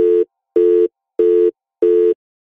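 Telephone busy tone: four short, even beeps about a third of a second long and a little over half a second apart, the line signalling that the call has ended.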